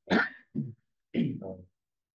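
A person clearing their throat in three short bursts within about two seconds. The first and last bursts are the strongest.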